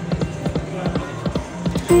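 Dancing Drums slot machine's reel-spin sound: quick ticks, about five or six a second, over a steady low electronic music bed. A louder held musical tone comes in near the end as the reels stop on a win.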